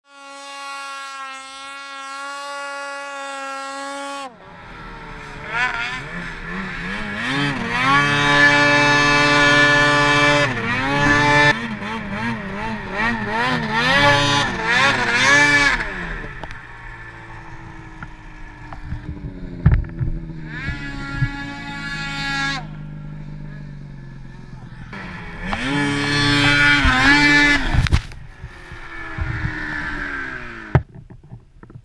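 Two-stroke snowmobile engines revving hard in deep snow. The pitch rises and falls as the throttle is worked. A steady high drone opens, there is a quieter stretch with a couple of sharp knocks midway, and a loud rev cuts off sharply near the end.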